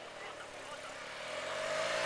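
A motor vehicle's engine approaching, its note rising gradually in pitch and growing steadily louder.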